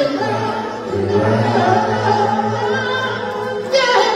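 Soul vocal group singing a held closing harmony over a live band, with a steady low note under the voices. A sudden loud crash comes near the end as the song finishes.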